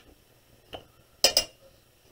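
A light tap, then a short clatter of a few hard clicks about a second and a quarter in: a pencil and an architect's scale ruler being set down on the desk.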